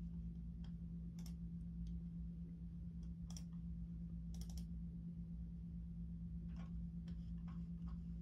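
Keys on a full-size Logitech membrane keyboard pressed now and then: scattered short clicks at an uneven pace, a few of them in quick little runs, over a steady low hum.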